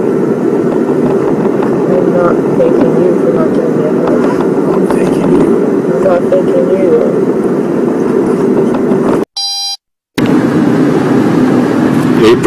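Steady engine and road rumble inside a car's cabin, with faint voices under it. About nine seconds in, the sound cuts out for under a second and a short electronic beep sounds in the gap, where one recording ends and the next begins.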